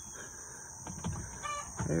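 Chickens clucking faintly, with one short, clear cluck about one and a half seconds in and a few light knocks just before it.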